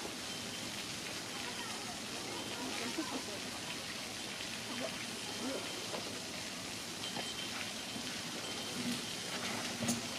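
Faint, distant voices of people talking over a steady hiss of background noise, with a brief knock near the end.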